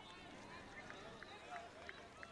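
Faint, distant voices of players calling on an outdoor playing field, with a few faint short ticks.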